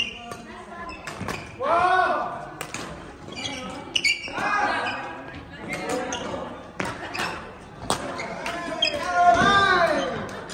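Badminton doubles rally in a large hall: sharp cracks of rackets striking the shuttlecock every second or so, mixed with court shoes squeaking and players' short calls. A loud shout near the end as the point is won.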